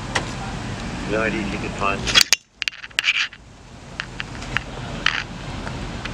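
Outdoor street background with a cluster of loud sharp clicks and rattles about two seconds in, a brief dropout among them, and a few scattered single clicks over the next three seconds.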